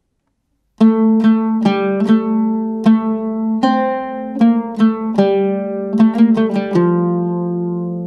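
Oud plucked with a plectrum, playing a quick melodic phrase in maqam Bayat on D, about twenty notes in a row starting about a second in and ending on a long ringing note.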